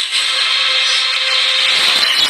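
A loud, steady, harsh hissing drone from a cartoon soundtrack: a dramatic sound sting under a menacing close-up.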